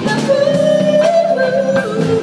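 Live pop band with a female lead singer holding one long sung note that steps down to a lower pitch about halfway through, the band playing underneath.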